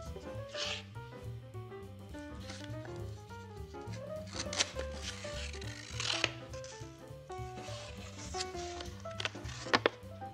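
Instrumental background music with a bass line and melody, over sheets of origami paper rustling and crinkling as they are folded and creased in several short bursts, with two sharp crackles near the end.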